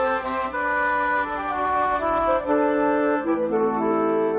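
Instrumental film score: a melody of held notes moving step by step, with lower sustained chords coming in about three seconds in.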